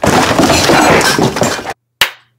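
A very loud, harsh crashing noise, like something breaking, lasting almost two seconds and cutting off suddenly, then a sharp click.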